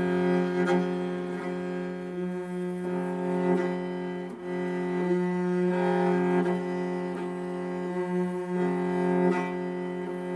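Morin khuur (Mongolian horsehead fiddle) bowed slowly in a galloping horse rhythm. A steady low note sounds under a higher note that changes every second or so, with short repeated bow strokes.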